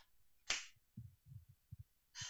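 A short sharp noise about half a second in, then a few soft, low thumps of footsteps on a floor.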